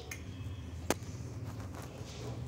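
Metal wire whisk stirring biscuit batter in a bowl, with one sharp click of the whisk against the bowl about a second in, over a low steady hum.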